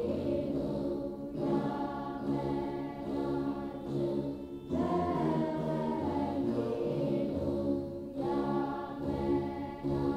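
A group of voices sings an Ethiopian Orthodox mezmur (hymn) in long phrases, with short breaks about every three to four seconds, accompanied by plucked begena lyres.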